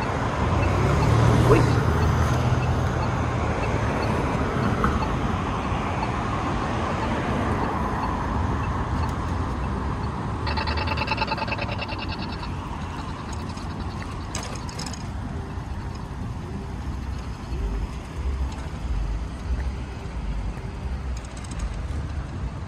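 Road traffic passing through a busy intersection, with a heavy vehicle's low rumble loudest in the first few seconds. About ten seconds in, a rapid electronic ticking buzz lasts about two seconds, from the accessible pedestrian crossing signal.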